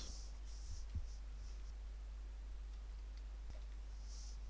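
Faint computer keyboard typing: a few soft keystrokes, mostly in the first couple of seconds, over a steady low hum.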